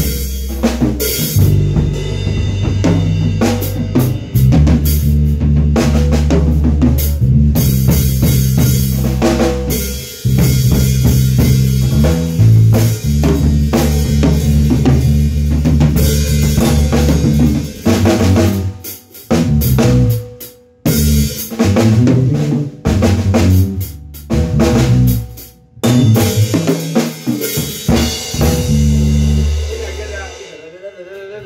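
A live drum kit and electric bass guitar playing together with a steady beat, loud, with several short stops in the second half before the playing halts at the end.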